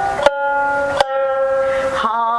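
Jiuta shamisen played solo: three plucked notes, the last, about a second in, left ringing for about a second.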